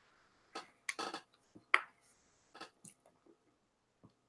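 A handful of faint, short clicks and rustles, small handling noises picked up by a microphone, about six spread across the few seconds with silence between them.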